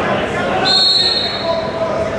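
A whistle blown once, a steady shrill blast of just under a second starting a little past halfway, over voices shouting.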